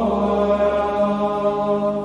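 Men's voices singing Gregorian chant in Latin during Compline, the night prayer of the Divine Office. Long held notes move to a new pitch about once a second.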